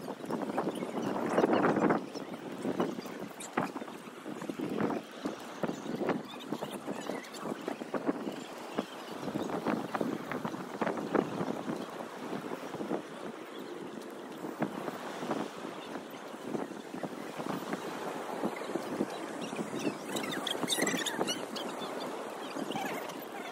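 Wind buffeting the microphone over the steady wash of breaking surf, louder in the first two seconds.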